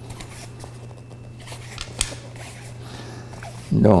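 Hands pressing and rubbing a bicycle tyre on its rim as they work around the wheel, faint scuffing with a single sharp click about halfway through, over a steady low hum. This is the check, after refitting the tyre, that the inner tube is not pinched under the bead.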